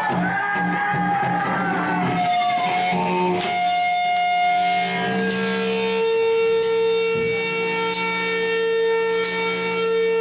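Electric guitar played loud through an amplifier, letting long notes ring without drums: the notes bend slowly in pitch over the first couple of seconds, then one high note is held steady for the second half.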